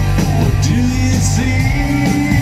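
Live rock band playing loud over an arena PA, heard from the audience: electric guitars and bass with a singing voice.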